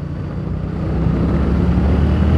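Yamaha Tracer 7's 689 cc CP2 parallel-twin engine pulling under acceleration, steadily growing louder.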